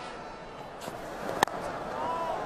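A single sharp crack of a cricket bat striking the ball, about one and a half seconds in, over a faint steady stadium crowd murmur.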